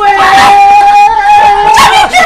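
A woman's high cry of excitement, one long held note of nearly two seconds that breaks off just before the end.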